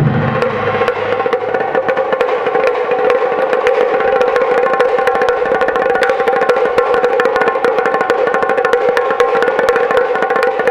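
Japanese taiko drumming: deep big-drum strokes die away in the first second, giving way to a fast, unbroken stream of strokes on small, high-pitched taiko drums.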